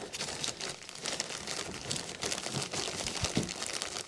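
Zip-top plastic bag crinkling as hands handle it, with dried soil shifting inside, a dense run of small crackles and a soft thump about three seconds in.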